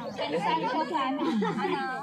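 People talking over one another in casual chatter.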